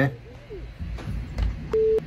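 A short, steady electronic beep near the end: a video-call alert tone sounding as a participant leaves the call. Before it come low rumbling and a few faint clicks.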